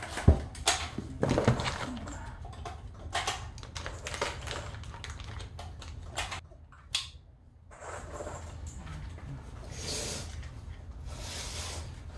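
Handling noise from rifle parts and their packaging: scattered small clicks and knocks of plastic and metal parts, one sharper click about seven seconds in, and short stretches of rustling near the end.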